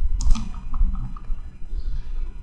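Low steady hum with a single sharp click about a quarter second in and a few faint short ticks after it.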